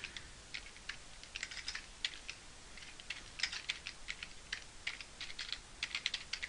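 Computer keyboard typing: irregular keystrokes in short runs with brief pauses, as a spreadsheet formula is entered.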